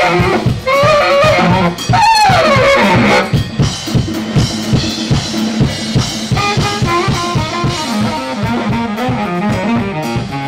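A live brass band with a drum kit plays upbeat music. Saxophone and trumpets carry a loud line for the first few seconds, and one note slides down in pitch about two seconds in. The band then drops to a softer groove over a steady drum beat.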